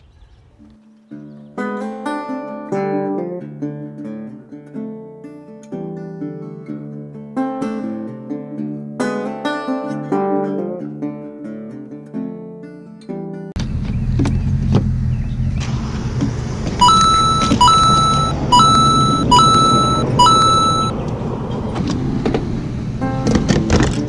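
Plucked-guitar music for about the first half, then an abrupt cut to the steady rumble of a car driving on the road. A run of five evenly spaced electronic beeps sounds over the road noise a few seconds later.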